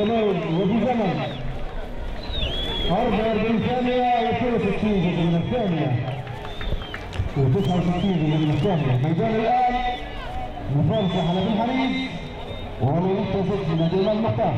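A man's voice talking steadily, as in live commentary.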